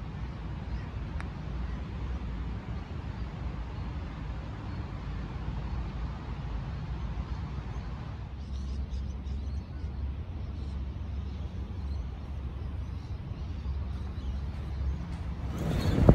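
Steady low rumble of wind on the microphone over faint open-air ambience, with one faint click about a second in.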